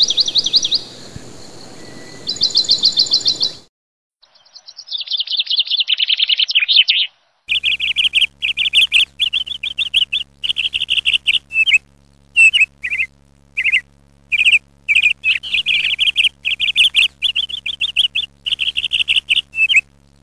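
Recorded birdsong: a songbird's rapid chirping trills, coming in several stretches that start and stop abruptly. The longest stretch starts a little after the middle: a dense run of short trilled phrases with brief gaps between them, over a faint steady hum.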